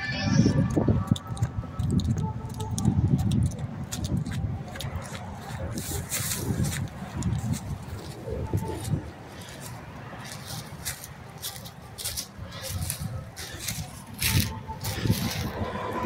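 Instrumental music from a car's 6.5-inch Resilient Sounds door speakers heard at a distance, mostly its low end, with footsteps and rustling through grass close by.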